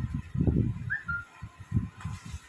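Dull low bumps and rumbles of cloth being handled and brushed close to the microphone as a dupatta is draped. One short, high chirp comes about a second in.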